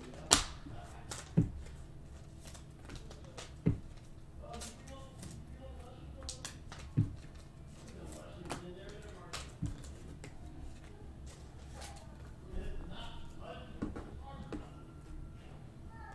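Panini Prizm football cards being handled: flipped through and set down on a table, with a few sharp separate taps and light card slides. Faint voices run underneath.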